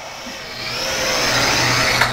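Eachine E38 toy quadcopter's four brushed coreless motors and propellers whirring with a high whine as it comes down to land, getting louder over the first second and then holding steady.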